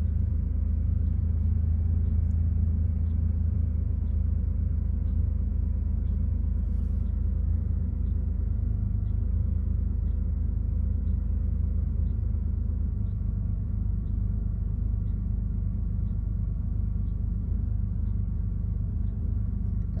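Porsche 930's turbocharged flat-six idling steadily at about 1000 rpm, heard from inside the cabin. The engine is cold, a minute or so after a cold start, and still warming up.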